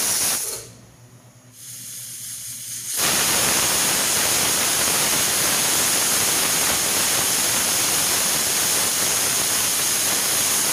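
Stainless steel pressure cooker on a gas burner, venting steam from its weight valve in a loud, steady hiss: the cooker is up to pressure. The hiss drops away about half a second in and comes back at full strength about three seconds in.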